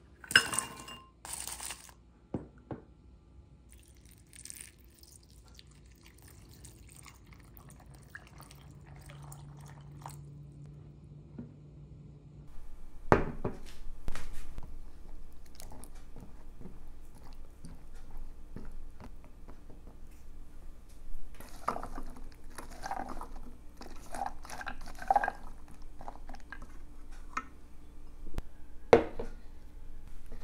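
Pumpkin seeds poured into a glass bowl, rattling against the glass. Warm water is then poured over the nuts and seeds. In the second half the soaked nuts are stirred with a silicone spatula and the water is drained off, with knocks and clinks of the glass bowl.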